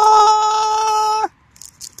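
A man's voice holding one long high note that cuts off sharply about a second and a quarter in, followed by faint crinkling of a plastic foil blind bag.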